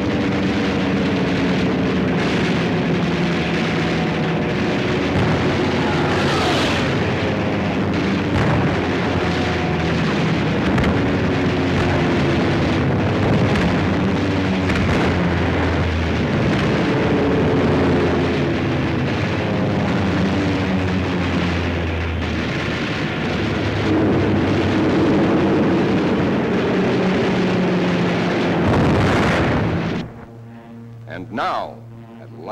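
Film soundtrack of aerial combat: aircraft engines running under a dense, continuous rumble of explosions and gunfire, loud throughout, with engine tones that hold and glide up and down. It cuts off abruptly at the end.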